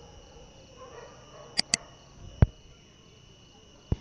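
Quiet background with a faint, steady high-pitched tone. Two short, high chirps come about a second and a half in, and a few soft knocks are scattered through.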